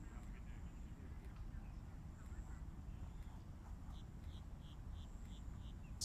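Faint outdoor ambience: a steady low rumble with scattered faint chirps, and a run of about six short, high chirps, roughly three a second, in the last two seconds.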